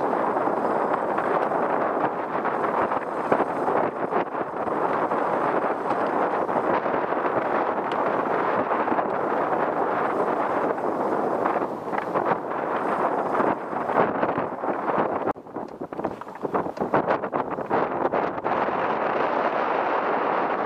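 Wind buffeting the microphone on open water: a steady rushing roar, which drops briefly about fifteen seconds in.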